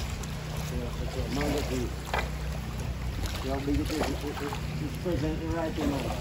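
Indistinct voices, heard in short snatches over a steady low rush of river water.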